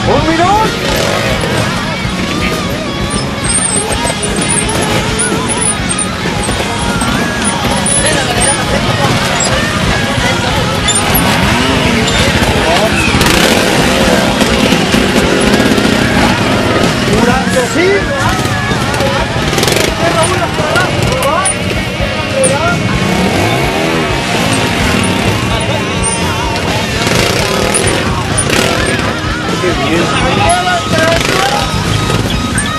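A crowd of spectators shouting and cheering over a trials motorcycle's engine as the bike climbs a steep rock step.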